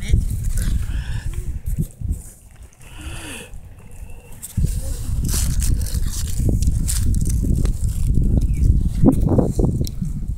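Low, gusty rumble of wind buffeting the microphone. It dies down for a couple of seconds about two seconds in, then comes back as strong as before.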